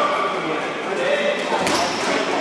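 Indoor futsal game in an echoing sports hall: voices calling out over a steady din, with a sharp ball kick about three-quarters of the way in.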